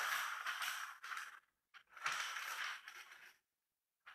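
A large sheet of newsprint rustling as it is handled and pressed flat against a painting surface, in two bursts of about a second each, then quiet for the last half-second or so.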